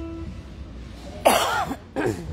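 A held electric guitar note dies away. About a second and a quarter later comes a loud, half-second cough picked up close by a microphone, and another short burst of voice follows at the very end.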